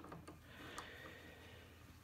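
Near silence, with a couple of faint clicks from a lock decoder tool being turned in a car door lock cylinder.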